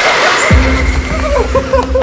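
A liquid rocket engine's hot-fire roar, a hiss-like rush, fades out in the first half second; the engine has a 3D-printed, regeneratively cooled Inconel 718 thrust chamber. About half a second in, music with a deep steady bass comes in.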